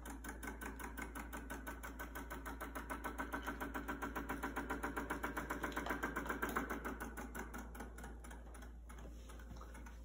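Battery-powered motor of a KiwiCo cardboard spin-art machine spinning its paper-covered wheel, with a fast, even rattle. It grows louder toward the middle, then falls back quieter for the last few seconds.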